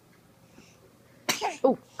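A person coughing once, sharp and sudden, about a second in, after a quiet stretch, followed by a short spoken 'oh'.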